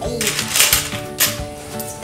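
Coins clinking in a cash box tray as a child picks them out, a few light clicks over background music.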